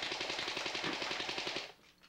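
A rapid burst of automatic gunfire, a fast string of shots that stops abruptly near the end.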